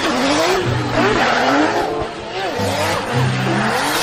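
BMW drift car sliding sideways with tyres squealing. The engine revs up and down as the car holds the drift.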